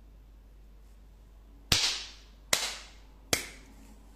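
Three sharp cracks about a second apart, each dying away quickly, over a faint steady hum.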